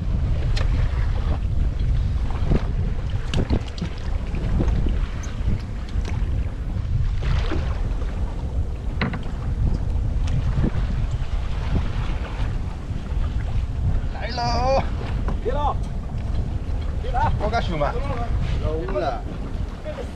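Wind buffeting the microphone on an open boat at sea: a steady low rumble, with a few short knocks along the way. Voices call out briefly in the second half.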